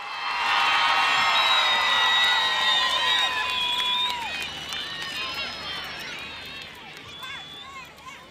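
Large crowd cheering and screaming in welcome of a band just announced on stage. The cheering swells about half a second in, then slowly fades over the last few seconds.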